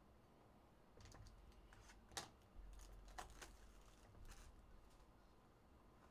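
Faint clicks and rustles of a cardboard trading-card hobby box being handled and opened, with a sharper snap about two seconds in and another a second later.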